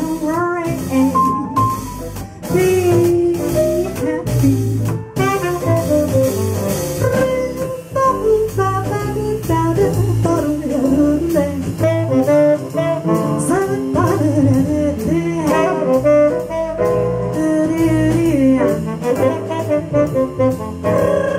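Live jazz band playing: a tenor saxophone plays an instrumental melody over upright bass accompaniment.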